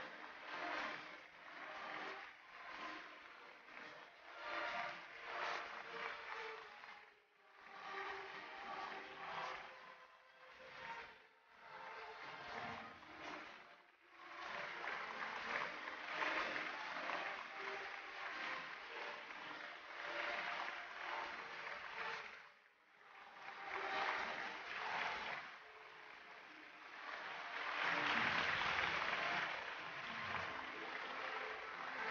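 Theatre audience applauding, with music playing under the clapping; the applause swells and dips, loudest near the end.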